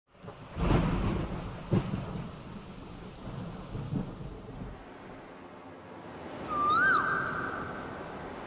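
Thunder rumbling over steady rain, with sharper cracks about two and four seconds in. Near the end a flute slides up into a long held note.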